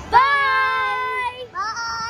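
A child's voice holding a long, steady sung note for about a second, followed by a second held note about a second and a half in.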